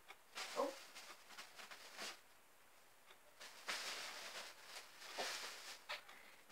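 Faint scattered rustling and shuffling: several short bursts of handling noise a second or two apart, as belongings are moved about in a small room.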